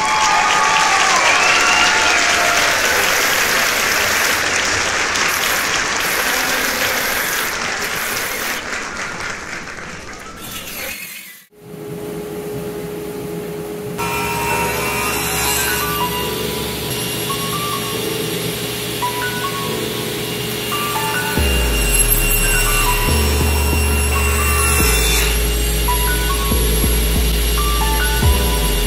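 A cordless circular saw cutting through a wooden board, a loud, even noise that stops suddenly about 11 seconds in. After that, background music with steady notes and, from about 21 seconds, a heavy bass line.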